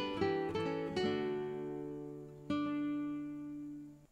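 Acoustic guitar music: strummed chords ring out and fade, with a last chord about two and a half seconds in that decays and then cuts off suddenly.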